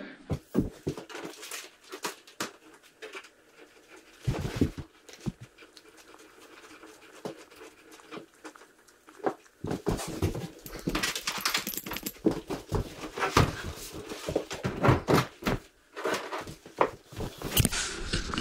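Clicks, knocks and scrapes of a flat-screen TV and its wall-mount bracket being handled, busier in the second half as the TV is lifted and hooked onto the wall bracket. Breathy, panting-like sounds come with the effort.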